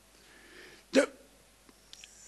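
A man's single brief, clipped hesitation syllable ('the') about a second in, spoken close to a table microphone. Faint mouth clicks follow, with a breath near the end, over quiet room tone.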